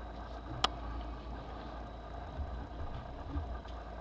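Paper booklets being handled on a table: a sharp click about half a second in, then a few soft low knocks, over a steady low hum.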